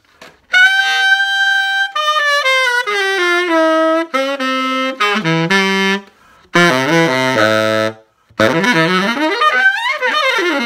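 Selmer Balanced Action tenor saxophone played in short phrases: a held high note, a descending line, a lower phrase ending on a low note, then a quick run upward near the end, with brief pauses between phrases. The horn is on its old original pads without resonators, untouched before overhaul.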